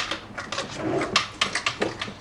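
A drawer being pulled open, with a sharp click at the start and several quick knocks and clatters.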